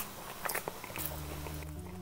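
A person chewing food, with a few faint short clicks in the first second, over a steady low hum.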